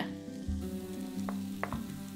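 Diced onion frying gently in oil in an enamelled cast-iron pot, with a few light clicks as spices are tipped in from a small bowl. Soft background music plays underneath.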